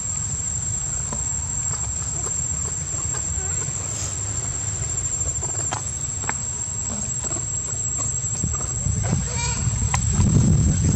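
Outdoor ambience of a steady, high-pitched insect drone over a low rumble, with faint, scattered short squeaks from macaques and a brief pitched call near the end.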